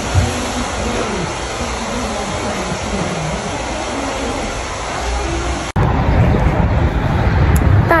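Steady rushing noise with faint voices in the background. About six seconds in it cuts abruptly to wind buffeting the microphone over a low rumble of street traffic.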